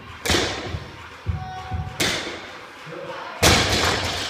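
Loaded barbell with rubber bumper plates dropped onto a rubber gym floor three times, each landing a sharp thud with a short ring; the last drop, near the end, is the loudest.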